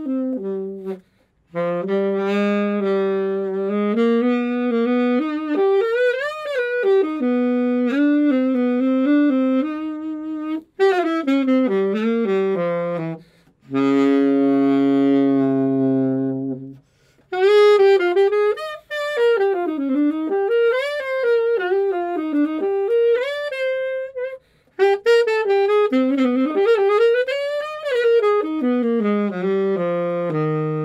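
Unaccompanied alto saxophone playing a jazz melody in phrases, with brief pauses for breath. About halfway through it holds one long low note.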